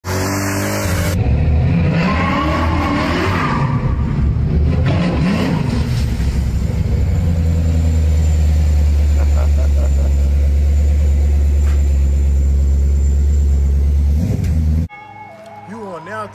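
Car engine revving hard while its rear tyres spin in a smoky burnout. The revs rise and fall over the first few seconds, then hold a steady high-rpm drone that cuts off suddenly about a second before the end.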